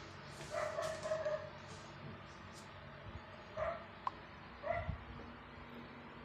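Three short pitched animal calls, the first the longest, over a low steady hum.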